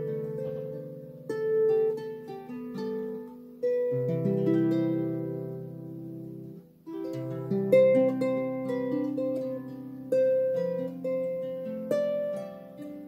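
Celtic harp played solo: a plucked melody over ringing bass notes, each note decaying after it is struck, with a brief break a little past the middle before the playing picks up again.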